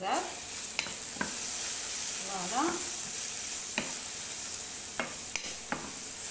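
Sliced green chili peppers sizzling in a frying pan while being stirred with a wooden spoon: a steady high frying hiss, with a few sharp clicks as the spoon strikes the pan.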